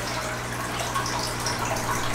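Water poured from a glass jar into a fish-acclimation container in a small aquarium, a steady trickling splash over a low steady hum.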